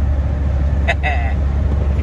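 Steady low road and engine drone heard from inside a car cabin at highway speed on a wet road, with a short burst of voice about a second in.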